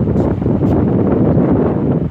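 Wind buffeting the phone's microphone: a loud, steady low rushing noise.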